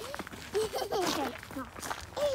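Small children's voices chattering in short, high utterances, with footsteps on a gravel path.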